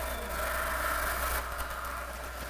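Room tone in a hall: a steady low electrical hum with a fainter steady hiss.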